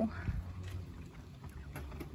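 Low steady rumble of wind on the microphone, with a few faint clicks.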